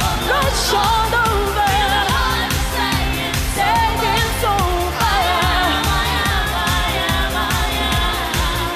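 A woman singing the lead vocal of an up-tempo pop song over a full backing track with a steady dance beat.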